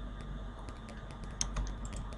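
Computer keyboard keys and mouse buttons clicking in a quick, irregular series, the loudest click about one and a half seconds in, over a low steady hum.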